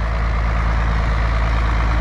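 Diesel engine of an 8940 farm tractor running steadily at a constant low speed, a low, even hum with no change in pitch.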